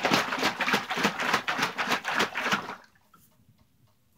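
Bottle of liquid plastisol being shaken hard by hand: a quick, even rhythm of sloshing strokes, about six a second, that stops a little under three seconds in.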